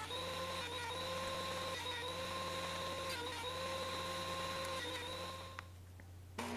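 DeWalt benchtop thickness planer running as it planes walnut boards to thickness: a steady motor whine that dips briefly in pitch every second or so, fading out near the end.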